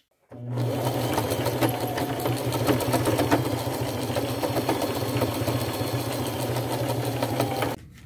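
Electric sewing machine running steadily, stitching a wide zigzag seam through layered lace and fabric: a steady motor hum with rapid needle ticks. It starts a moment in and stops abruptly near the end.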